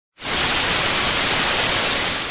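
Television static hiss: a loud, steady rush of white noise that cuts in suddenly just after the start.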